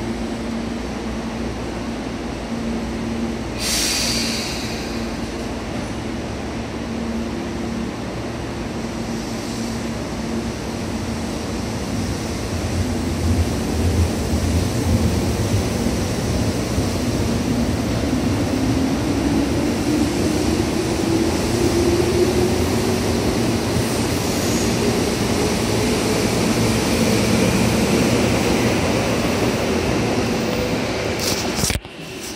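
Tobu 10000 series electric train running, heard from inside the car. A brief hiss comes about four seconds in. From about halfway, the traction motor whine rises steadily in pitch and the running noise grows louder as the train picks up speed.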